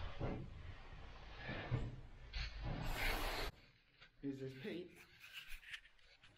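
Rubbing and scraping noise of a caver moving over rock, clothing and gear brushing against stone, which drops away suddenly about halfway through; a short muffled voice follows about four seconds in.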